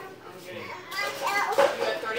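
Children talking, the voices getting louder from about a second in.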